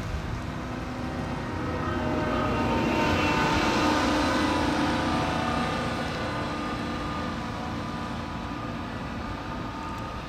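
Diesel engine of a wheel loader driving past, a steady hum with a held engine tone that swells over the first few seconds, is loudest around the middle and fades toward the end.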